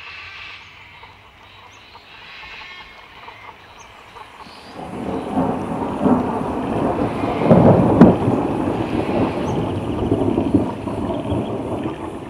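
Thunder rolling. A deep rumble builds about five seconds in, is loudest with a sharp crack just past the middle, and then rumbles on, slowly fading.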